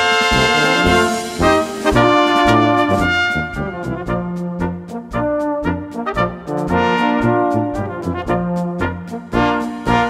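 Small brass ensemble playing a traditional Bavarian-Bohemian march, with melody lines over a bass part and an even percussion beat.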